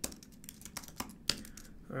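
Computer keyboard typing: a run of separate, fairly quiet keystrokes at an uneven pace, the last one being the Enter key.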